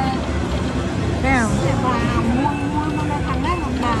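Casino floor din around a slot machine running its free games: a steady low rumble of machines and chatter, with pitched sounds sliding up and down in pitch from about a second in until near the end.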